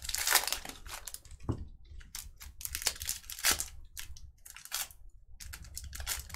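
Foil trading-card pack crinkling and tearing as it is ripped open by hand, in irregular crackling bursts with two short pauses.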